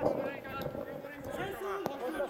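Players' voices calling across an outdoor football pitch, and one sharp thud of a football being kicked near the end.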